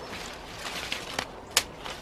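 Secateurs pruning grapevine shoots: leaves rustle, then the blades snap shut with a couple of sharp clicks, the louder one about one and a half seconds in.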